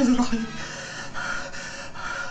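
A man's frightened voiced gasp at the start, then rapid heavy panting, a breath about every half second.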